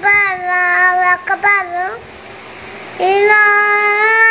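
A four-year-old boy's high voice chanting the azan, the Islamic call to prayer, in long drawn-out phrases. One held phrase ends about two seconds in, and after a pause for breath the next long phrase begins about a second later.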